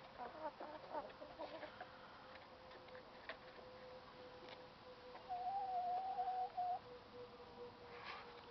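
Hens clucking softly in short notes for the first couple of seconds, then one drawn-out, level-pitched call lasting about a second and a half, about five seconds in.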